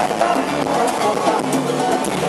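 Live salsa band playing through a concert PA, heard from the crowd, with drums and Latin percussion prominent.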